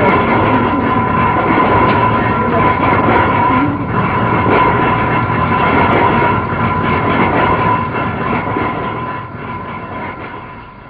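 Steady, loud rumble and rattle of a moving vehicle, likely a train, with a sustained high tone running through it; it fades over the last few seconds.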